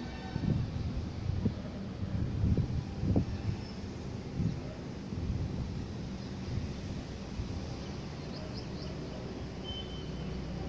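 Steady low background rumble, with several louder low gusts in the first four seconds and a few faint brief chirps near the end.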